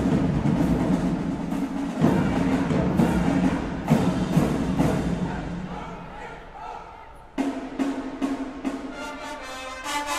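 High school marching band playing, with heavy drum strokes from the drumline. The music fades down after about five seconds, then a sudden hit a little past seven seconds starts a new run of drum strokes. Held brass notes come in near the end.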